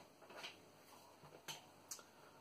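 Near silence with a few faint, sharp clicks of a fountain pen being handled, the clearest about one and a half seconds in and just before the end.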